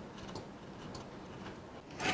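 Faint, scattered light ticks and clicks from hands handling a plastic switch-panel housing, over quiet room tone.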